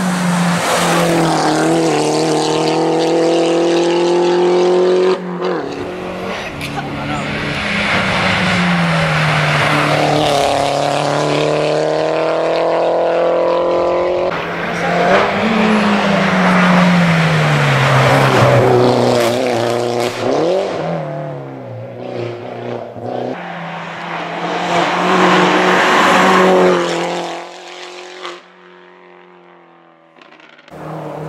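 Mini Cooper JCW race car's four-cylinder engine revving hard up the hill. Its pitch climbs and drops sharply at each upshift, then slides down over several seconds in the middle. It rises once more and fades away near the end.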